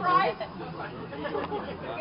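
People chatting: one voice close up at the start, then quieter background talk from several people.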